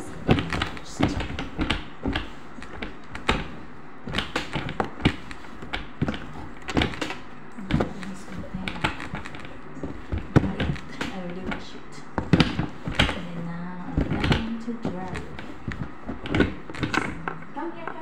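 Clear plastic storage box being handled and arranged by hand, giving many irregular knocks, taps and clunks against the plastic.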